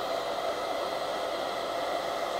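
Hair dryer on its low, hot setting, running with a steady airy whoosh and a faint motor hum as it blows onto a stainless steel fridge door.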